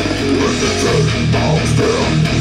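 Death metal: an electric bass guitar playing a fast riff of repeated low notes, cutting in suddenly at the start.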